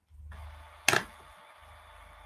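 A low hum with a faint hiss, broken about a second in by one sharp click.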